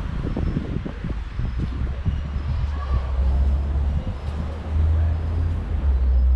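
Outdoor street ambience with heavy wind buffeting on the camera microphone, a low rumble that swells strongly near the end, and indistinct voices in the first couple of seconds.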